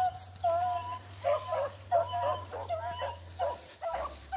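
Beagle giving tongue while running a rabbit track: a string of short, pitched barks, about two or three a second.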